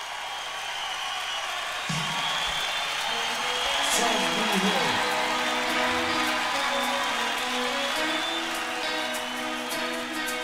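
Live concert audience noise, cheering and calling out, with sustained held notes from the band coming in about three seconds in. Near the end a fast, even run of sharp ticks starts as the song gets under way.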